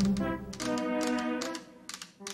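Long acrylic fingernails tapping rapidly on a hard tabletop, a quick series of sharp clicks, over background music.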